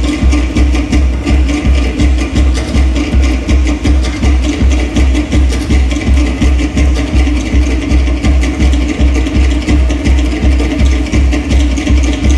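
Polynesian drum music: a steady low beat about three times a second under rapid, dense wooden strikes.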